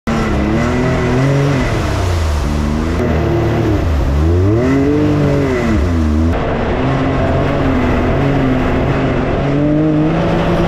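A 1000cc UTV's engine heard from onboard while being driven off-road, revving up and down several times as the throttle is worked. About six seconds in the sound changes abruptly to a steadier, lower engine note that climbs a little near the end.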